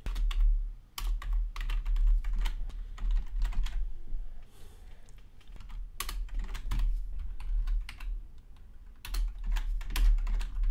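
Computer keyboard typing: bursts of irregular keystrokes with short pauses between them.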